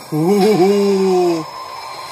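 A man's drawn-out "ooh" of surprise, about a second and a half long. It wavers at first, then holds steady and sags a little in pitch before stopping.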